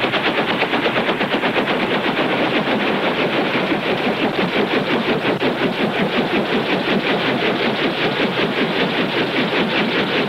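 Bell 47 helicopter running on the ground after landing, its rotor and piston engine making a loud, rapid, even beating.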